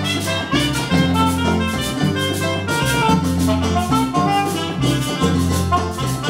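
Live Latin dance band playing: a bass line with held low notes, drum kit, and a saxophone carrying the melody.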